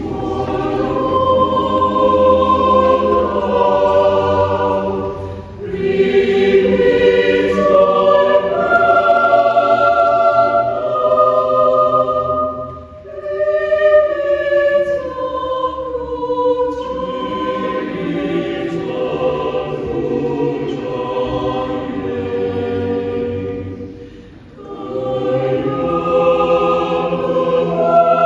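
Mixed church choir singing sacred choral music in sustained chords, in long phrases with brief breaks between them.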